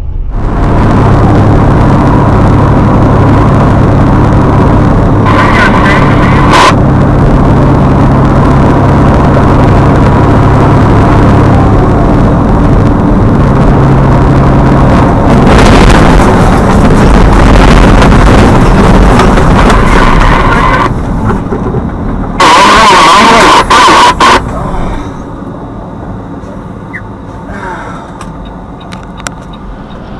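Loud, steady engine and road noise from vehicles at highway speed, broken by horn blasts: a short one about five seconds in and a very loud one of about two seconds a little past two-thirds of the way through. The road noise is lower in the last few seconds as the truck has slowed.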